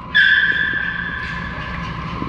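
A long, steady high-pitched squeal that starts sharply just after the start and weakens toward the end, heard amid two small white dogs' play fight.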